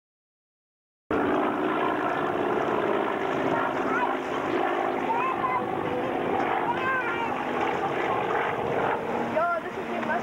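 Twin-engine Aero Commander flying past with the steady drone of its propeller engines, which cuts in abruptly about a second in.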